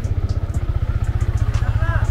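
A vehicle engine idling close by: a steady low rumble of rapid, even firing pulses. A voice is heard faintly near the end.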